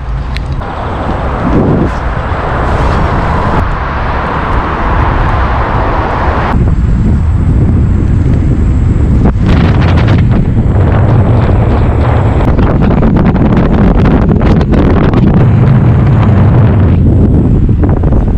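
Wind rushing over the microphone of a selfie-stick camera on a moving electric unicycle, mixed with road noise; it grows louder about six seconds in as the ride picks up, with a few brief knocks.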